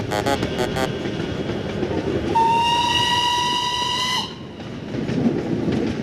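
Music cuts off, leaving a steady rumbling noise. Over it a single held whistle- or horn-like tone sounds for about two seconds in the middle, then stops.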